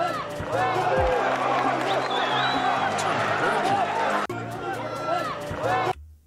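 Fight crowd yelling and cheering over background music, with many voices at once; the sound shifts abruptly about four seconds in.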